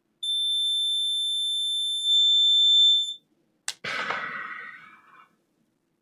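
A multimeter's continuity buzzer gives one steady high beep for about three seconds, the sign that the laptop motherboard's main power rail is still shorted. Near the end of the beep's fading there is a sharp click, followed by a brief rustle that dies away as the board is handled.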